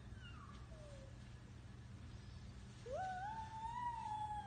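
A toddler's long, high-pitched vocal call, rising and then sliding back down, starting near the end, after a short faint squeak about a second in.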